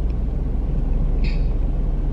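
Steady low rumble of a car idling, heard from inside the cabin, with a brief faint breathy hiss about a second in.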